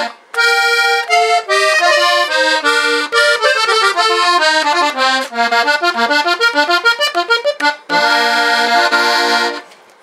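Hohner Corona II button accordion with F reeds in traditional tuning, the tremolo only slightly reduced, playing a quick run of melody notes and ending on a held chord near the end.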